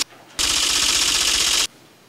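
Broadcast sound-effect sting between segments: a burst of hissing, rapid clicking noise lasting a little over a second, starting just after a brief drop and cutting off suddenly.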